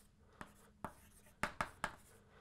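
Chalk writing on a blackboard: short, sharp taps and scrapes of the chalk as letters are written, about five in the two seconds, unevenly spaced.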